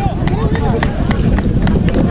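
Several men's voices calling and shouting at once from across an open playing field, with scattered sharp clicks among them.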